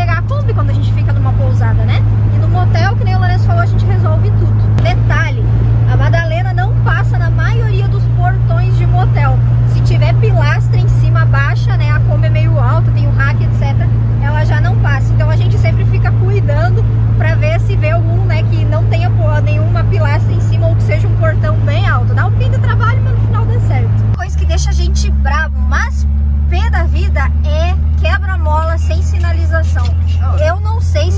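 Volkswagen Kombi engine running at cruise, heard from inside the cab as a loud, steady low drone, with a woman talking over it. About 24 seconds in, the engine note drops suddenly to a lower pitch.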